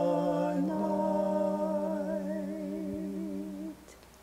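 A man and a woman singing a long held note together without accompaniment, the higher voice with a wide vibrato; the note stops shortly before the end.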